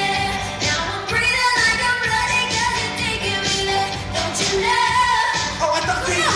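Pop song with a woman singing into a microphone over an amplified backing track with a steady dance beat.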